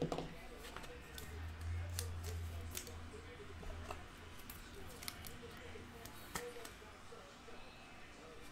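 A sharp tap, then faint scattered clicks and scrapes of a trading card and rigid plastic toploader being handled on a tabletop, as the card is slid into the holder.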